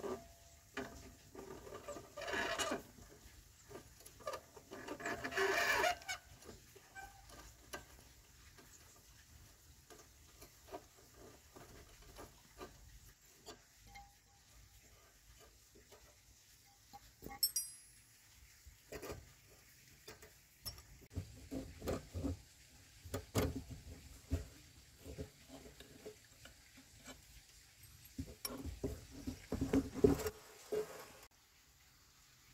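Metal-on-metal clicking and scraping from a T-handle wrench and fingers turning the adjuster nut on a Honda motorbike's rear drum-brake rod. There is a short rasping burst about two seconds in and another about five seconds in, then scattered light clicks and taps, busier near the end.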